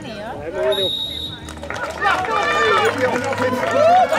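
Crowd of spectators talking and calling out, growing louder and denser about halfway through, with a short high steady tone about a second in.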